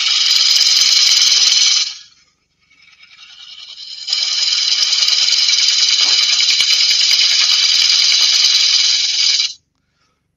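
A gouge cutting the outside of a spinning wooden bowl on a lathe, a loud steady hiss of shavings coming off. The first cut stops about two seconds in. The next builds up over a couple of seconds, holds, and cuts off suddenly near the end as the tool is lifted away.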